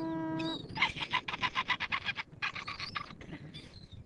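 A woman's long held chanting tone breaks off about half a second in. A rapid dolphin-like clicking chatter follows, about ten clicks a second, in two runs that fade toward the end.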